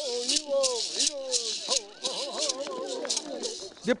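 Bororo dance chant: several voices chanting together over gourd rattles shaken in a steady beat of about three strokes a second.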